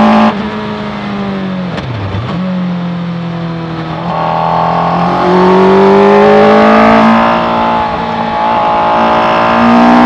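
Suzuki Hayabusa inline-four motorcycle engine of a Raptor R kit car at speed on track, heard from the cockpit. It lifts off suddenly just after the start, the revs dip and pick up again about two seconds in, then it pulls harder and louder from about five seconds, eases briefly around seven, and is back on full throttle near the end.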